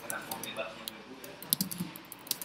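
Typing on a computer keyboard: a quick, irregular run of key clicks, the sharpest strokes about one and a half seconds in.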